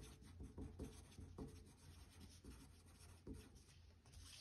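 Pencil writing on paper: a run of faint, short strokes as a word is written out by hand.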